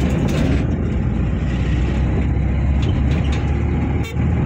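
Steady low rumble of a vehicle on the move, its engine and wind noise on the microphone.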